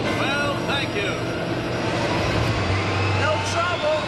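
Television commercial soundtrack: music and vocal sounds without clear words, over a steady low hum, with a thin whine rising slowly in pitch through the second half.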